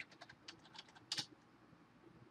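Typing on a computer keyboard: a quick run of light key clicks, with one louder click just over a second in.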